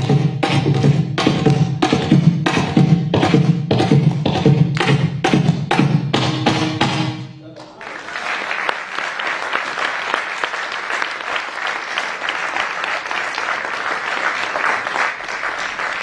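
Background hand-drum music: quick, closely spaced drum strokes over low ringing drum tones. About halfway through the drumming breaks off, and after a short dip a dense, even high patter without low tones follows.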